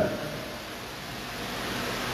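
Steady background hiss with no speech, growing slightly louder near the end.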